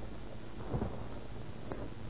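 Steady hiss and low rumble of an old 1935 radio recording's background noise, with a single faint click near the end.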